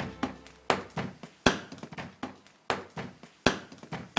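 A series of sharp, irregular clicks or knocks, about two to three a second, with short quiet gaps between them.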